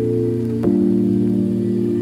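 Background music of slow, held keyboard chords, changing to a new chord about two-thirds of a second in.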